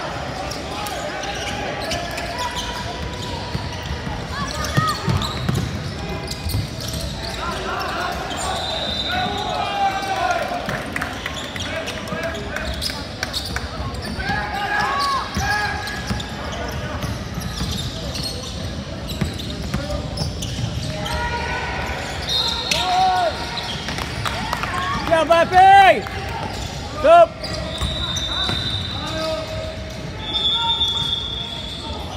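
Basketball game in a large echoing gym: the ball bouncing on the hardwood floor, sneakers squeaking, and voices of players and spectators. A cluster of loud, short squeaks comes a few seconds before the end.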